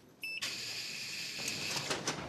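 A short electronic beep, then a steady buzzing hiss for over a second: a security door's lock being released as the door is opened.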